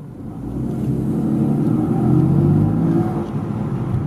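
BMW M4's twin-turbo inline-six heard from inside the cabin, pulling away gently under a throttle held back by an app-controlled pedal box in its power-limiting mode. The engine note grows louder over the first two seconds, climbs a little in pitch, and eases off slightly near the end.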